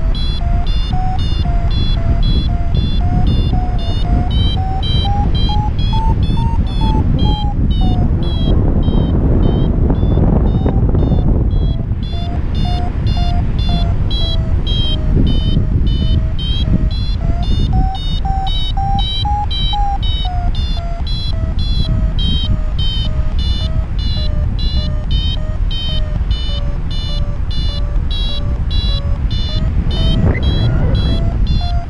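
Paragliding variometer beeping in quick short tones whose pitch climbs and falls with the rate of climb, signalling lift. The beeps stop for a few seconds near the middle, then resume. Wind rushes over the microphone throughout.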